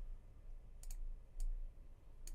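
Computer mouse clicks: a quick double click a little before a second in, then a single click about half a second later, over a faint low hum.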